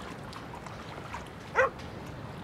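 A short animal call, falling in pitch, about one and a half seconds in, over a steady low background.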